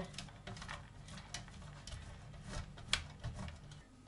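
Block of cheese being grated on the coarse side of a stainless steel box grater: a run of quick scraping strokes, with a couple of sharper clicks.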